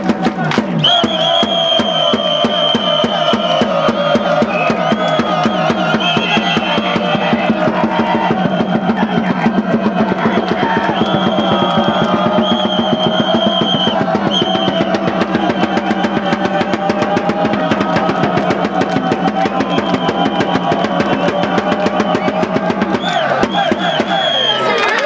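Cheering-section drums beating a fast, steady rhythm while the fans chant along in unison, stopping abruptly near the end.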